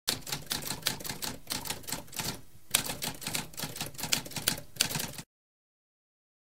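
Typewriter keys clacking in a quick run of strokes, several a second, with a brief pause about halfway through. The typing stops abruptly about five seconds in.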